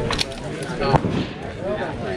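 Low talk from voices nearby, with two short sharp clicks or pops, one just after the start and a louder one about a second in.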